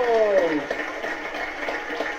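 Studio audience clapping, after a drawn-out tone that slides down in pitch during the first half-second.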